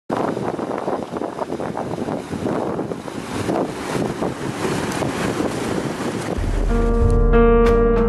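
Meltwater stream rushing and gurgling along a channel in glacier ice. About six and a half seconds in, music with a deep bass and steady instrument notes comes in, and the water sound cuts off just after.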